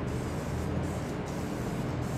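Aerosol spray can hissing as it lays a light mist of black guide coat over a freshly primed steel fender, a steady hiss that breaks off briefly twice.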